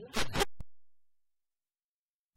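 A short scraping rustle, two quick loud strokes, then a small click, after which the sound cuts off suddenly to dead silence.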